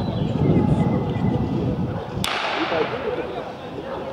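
Rough low rumble of wind buffeting the microphone, cut off by a single sharp click about two seconds in that is followed by a short fading hiss; faint distant voices underneath.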